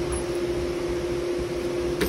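Steady background machine hum: one constant mid-pitched tone over an even hiss.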